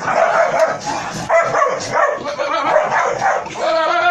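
A dog barking and yelping repeatedly, the barks coming close together in a fast, continuous string while it tussles with a goat.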